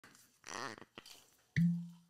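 A cork stopper squeaks with a wavering pitch as it is twisted in a glass bottle's neck, gives a small click, then pulls free with a sudden pop and a short low ring from the bottle that fades away.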